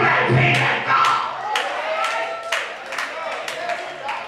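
Church congregation calling out and clapping a steady beat of about two claps a second over music, loudest in a burst of shouting at the start.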